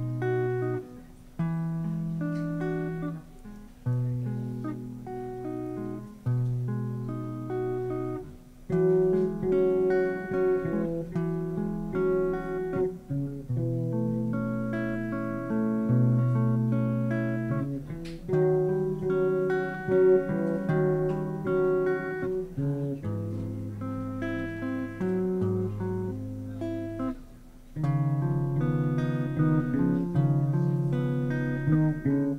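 Electric guitar playing a picked instrumental introduction in a six count, single notes ringing over low bass notes that change every couple of seconds.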